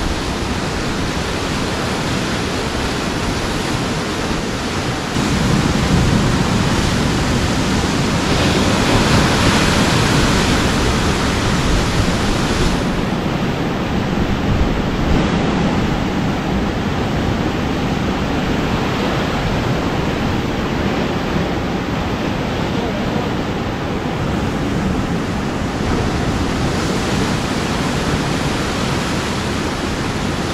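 Sea surf washing and breaking against the rocks, a loud steady rush of water with wind on the microphone. The wash swells from about five seconds in and eases again after about thirteen seconds.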